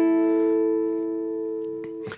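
A guitar chord ringing and slowly fading: the four-string F chord shape played at the fifth fret, which sounds as an A major chord. A faint click comes near the end.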